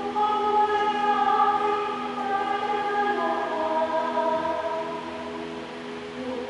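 A woman singing a slow liturgical chant into a microphone. She holds long notes that change pitch every second or two.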